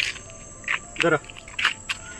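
Insects trilling steadily in a thin high tone, with a short spoken word and a few light clicks over it.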